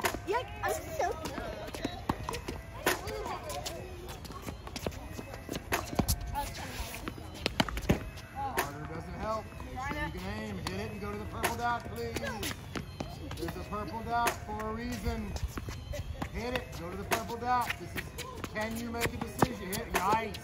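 Tennis balls struck by rackets and bouncing on a hard court, irregular sharp hits through the whole stretch, with children's voices talking over them.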